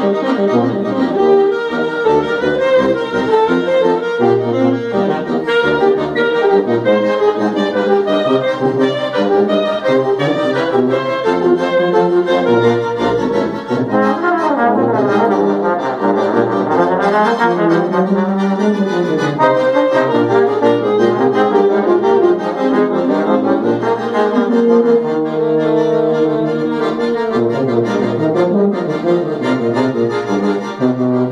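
Small acoustic ensemble of tuba, accordion, trombone and saxophone playing an instrumental piece: the tuba carries the bass under the accordion, while the trombone and saxophone take turns at the lead.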